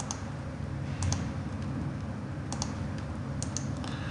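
A few light computer mouse clicks, some in quick pairs, over a steady low background hum.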